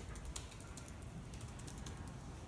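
Scattered light clicks and taps at an irregular pace over a quiet room background.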